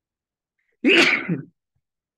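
A person sneezing once: a sudden, loud burst of under a second, about a second in.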